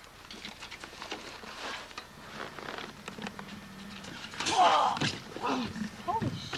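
Wrestlers scuffling on a tarp-covered backyard ring: faint footfalls and knocks on the mat, then a louder burst of crashing and rustling with voices near the end as a wrestler is tackled off the ring onto the grass.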